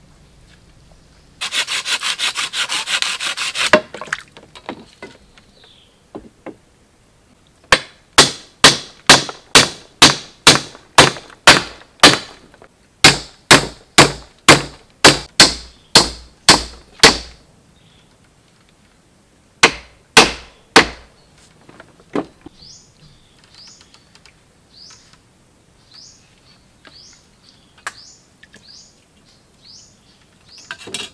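A wooden stake being hammered: about twenty sharp, evenly spaced wooden knocks at roughly two or three a second, then three more after a short pause. A harsh buzzing rasp lasts about two seconds near the start, and lighter taps follow the knocking.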